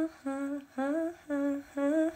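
A woman humming a short tune in separate held notes, about two a second, some sliding up at the start.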